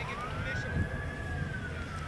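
Emergency-vehicle siren in a slow wail: a single tone that rises and then slowly falls again, over low background rumble.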